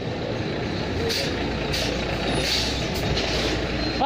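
A heavy motor vehicle, such as a truck, running past on the road: a steady low engine rumble under a broad noise, with a few short hissing bursts.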